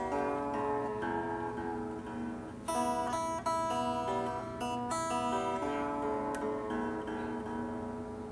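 Electric guitar with a Floyd Rose locking tremolo, its strings picked in a short run of ringing, overlapping notes to check the newly fitted, freshly tuned string. A louder group of notes starts about three seconds in.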